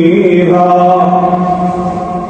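A man's voice reciting the Quran in melodic tajwid style. He draws out one long, steady note after a brief waver in pitch at the start.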